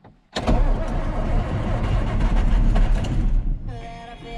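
A John Deere tractor's diesel engine starting on a cold morning: a sudden loud rumble about a third of a second in, which eases after about three seconds into a steadier, quieter run.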